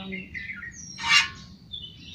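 High, short chirps gliding downward in pitch in the first half-second, like birdsong in the background, then a brief hissing burst about a second in.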